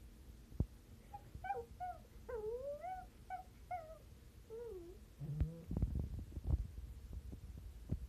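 Miniature Pinscher whining in a string of short, high calls that bend up and down in pitch, followed near the end by a brief cluster of knocks.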